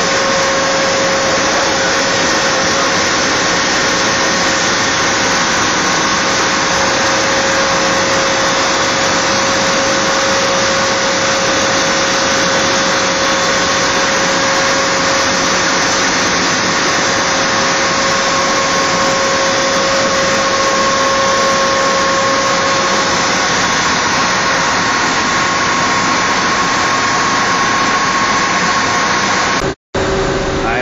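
Loud, steady noise of large V-type marine diesel engines running in a ship's engine room, with a faint steady whine over it; it cuts off abruptly near the end.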